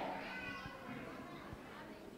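Faint voices of people in a large hall, dying away over the first second and leaving the room almost quiet.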